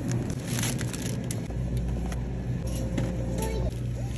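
Plastic produce bag crinkling in a hand, in short crackly bursts, over a steady low store hum.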